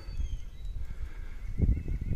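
Footsteps through grass and dry leaves: a few dull, low thuds on an uneven beat.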